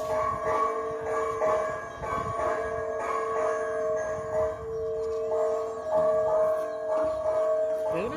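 A temple bell rung over and over, its two main tones ringing on steadily between strikes.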